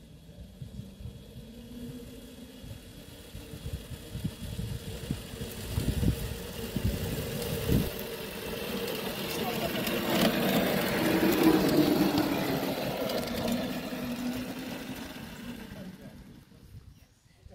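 Small ride-on miniature railway locomotive running along ground-level track, its motor hum growing louder as it approaches, loudest about eleven seconds in, then easing. Occasional sharp clicks sound from the wheels on the track.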